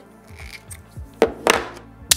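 Two sharp plastic clicks about a second apart, the small Insta360 GO 3 camera meeting its magnetic necklace mount, over background music with a steady beat.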